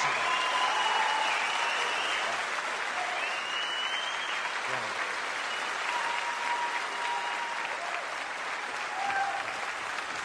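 Live audience applauding steadily after a stand-up comedian's punchline, easing slightly toward the end.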